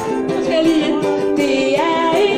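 Live band playing a song with a steady beat of about four strokes a second, with singing over plucked strings.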